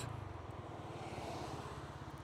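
Motor scooter's single-cylinder engine running steadily at low speed, heard from the rider's seat, with a light hiss of wind and road noise over it.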